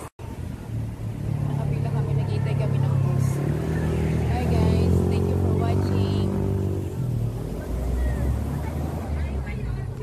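A motor vehicle's engine running close by on the road, a loud low steady drone that builds about a second in and eases off near seven seconds.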